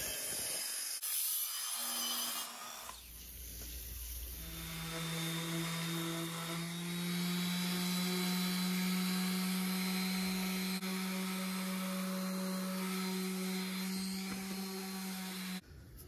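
A miter saw cutting through cedar boards for about the first second, then an electric orbital sander sanding a cedar board, its motor holding a steady hum under the rasp of the pad, until it stops suddenly near the end.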